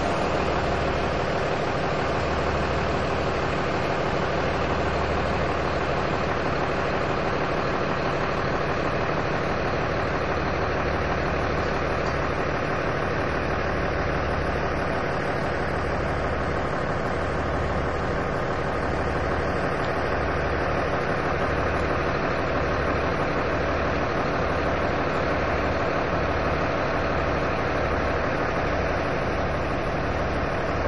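A heavy engine idling steadily, with a low throb that swells and fades over and over.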